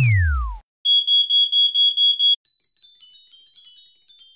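Electronic cartoon sound effects: the tail of a falling pitch glide, then a rapid high beeping, about five beeps a second for a second and a half, then a quieter shimmer of many quick high twinkling notes.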